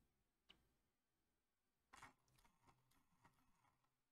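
Near silence: quiet room tone with a few faint, short clicks, the clearest about two seconds in.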